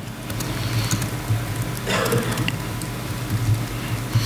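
Laptop keyboard typing, scattered light key clicks, over a steady electrical hum and hiss from the hall's microphone and PA. There is a brief soft rush of noise about halfway through.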